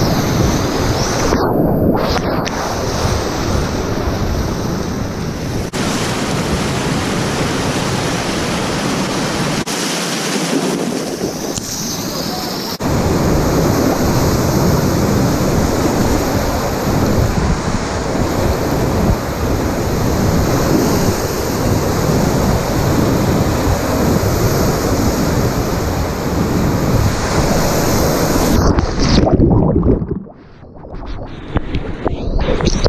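Class IV whitewater rapids rushing and splashing over and around an inflatable packraft, a steady, loud roar of churning water with wind buffeting the microphone. Just before the end the sound goes muffled as the boat plunges into a big hole and the camera goes under water.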